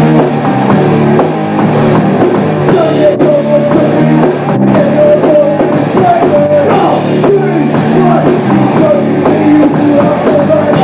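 A hardcore-metal band playing loud and fast: distorted electric guitars, bass and drum kit, with a vocalist shouting over them.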